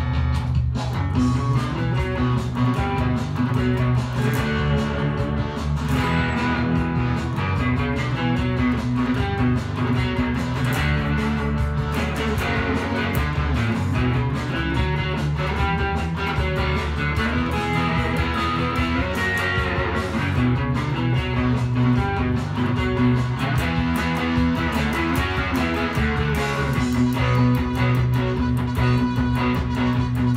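Electric guitar, a Stratocaster on its neck pickup run through a Line 6 Helix processor with reverb, playing chords and riffs continuously.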